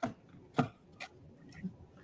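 Handling noise on a video-call participant's open microphone: four sharp clicks and knocks, the first two the loudest, over faint room noise that comes on suddenly.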